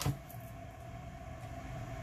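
Quiet room tone: a low, steady background hum with a faint steady tone in it, and a brief click right at the start.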